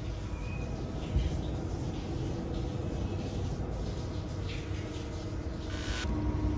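Steady low hum of room noise, with light handling sounds and one soft knock about a second in.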